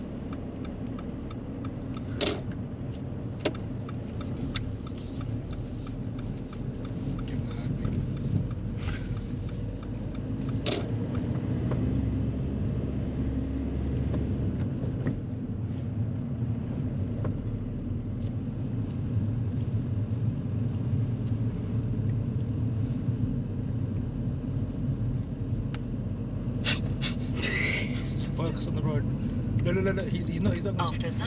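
Steady low rumble of road and engine noise inside the cabin of a moving car, a little louder from about ten seconds in, with a few faint knocks.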